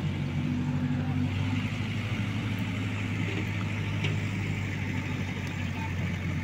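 An engine running steadily at constant speed: a low, even drone with no change in pitch.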